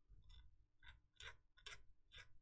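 Faint, short rasping strokes, about four in all, of a hand sanding tool worked against a small plastic model part, rounding off the nub where it was cut from the sprue.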